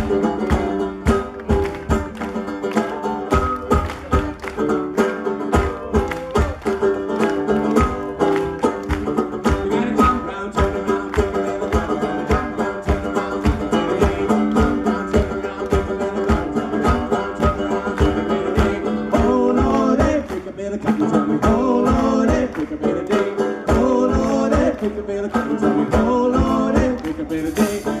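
Live folk band playing an up-tempo tune on banjo, acoustic guitar, fiddle and double bass over a steady quick beat, with a wavering melody line coming forward in the last third.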